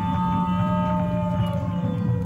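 Whale-call sound effect: long drawn-out tones, one sliding slowly downward, over a steady low drone.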